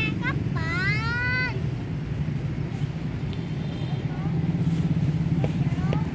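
A high-pitched voice calls out once, rising and then held, about half a second in, over a steady low rumble.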